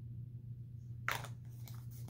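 A single short sniff about a second in, a person smelling a fragrance up close, over a steady low electrical hum.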